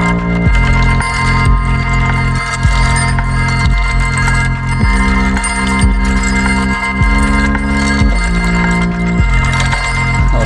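Electronic music played live on a keyboard synthesizer: held low bass chords that change every second or two, under a steady, shimmering high loop of sustained tones from a granular looper pedal.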